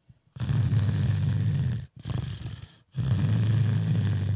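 Two long, rough, snore-like vocal noises, each about a second and a half with a short break between, loud and close on a handheld microphone.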